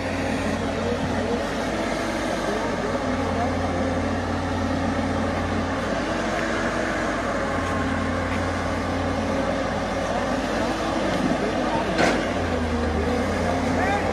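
Diesel engines of hydraulic excavators running steadily as they work through rubble, with a single sharp knock near the end.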